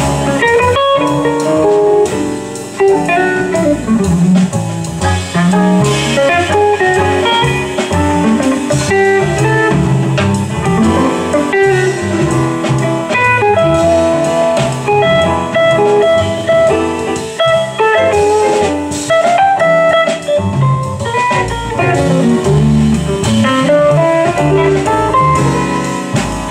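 Jazz guitar solo on a semi-hollow-body electric guitar, a stream of quick single-note lines, played live with bass and drums behind it.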